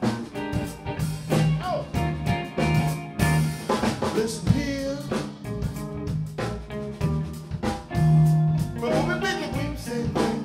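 Funk band playing live: a 1970s Hagstrom hollow-body electric guitar playing lines with bent notes over electric bass, a drum kit keeping a steady beat, and keyboard.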